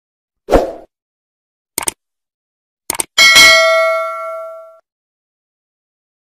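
Subscribe-button animation sound effect: a soft thump, two quick double clicks, then a bright notification-bell ding that rings out and fades over about a second and a half.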